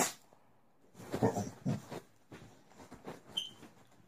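A dog making a few short, low vocal sounds about a second in, after a brief cough at the very start.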